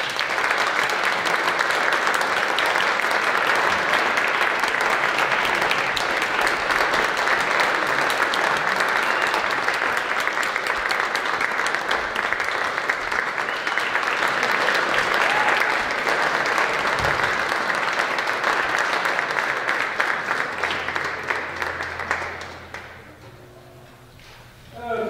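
Audience applauding: a dense patter of clapping that starts abruptly and holds steady, then dies away about 22 seconds in.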